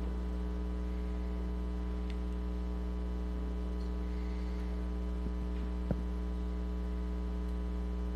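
Steady electrical mains hum in the microphone feed, with one faint click about six seconds in.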